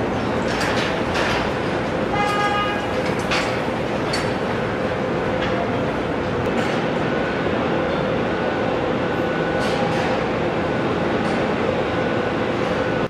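Car assembly plant floor din: a steady machinery hum with an even tone under it and scattered clanks, and a short horn-like beep about two seconds in.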